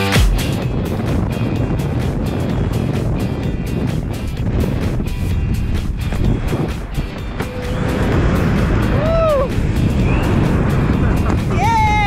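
Wind rushing and buffeting over a camera microphone during a tandem parachute descent under an open canopy. A faint music track lies under it. A voice calls out with rising and falling pitch about eight seconds in and again near the end.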